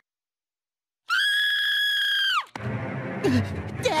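After about a second of silence, a single high-pitched cartoon scream, held steady for about a second and a half and sliding down in pitch as it cuts off.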